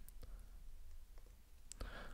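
Faint clicks of a computer keyboard: a few separate keystrokes.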